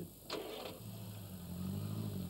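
Small car engine, a Ford Anglia's, starting with a short rasp about a third of a second in, then running steadily with its pitch drifting gently up and down.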